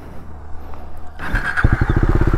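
KTM Duke 250's single-cylinder engine idling low, then revving up sharply about a second and a half in and settling into a faster, even beat.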